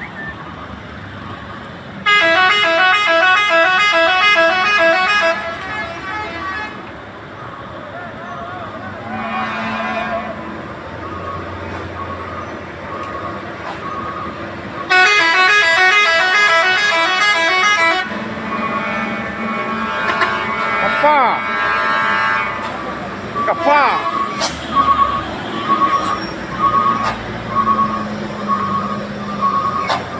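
Truck horns playing a quick multi-note tune, twice, each time for about three seconds, over the sound of heavy truck engines running. Near the end a short beep repeats about once a second.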